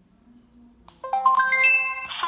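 Security camera's built-in speaker playing its reset chime: a quick rising run of about six held tones, starting about a second in. The tone signals that the factory reset succeeded.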